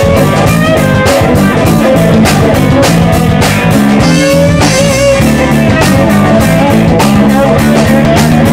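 Live rock band playing an instrumental passage with no singing: electric guitar lead with bent and wavering notes over a steady drum beat and bass.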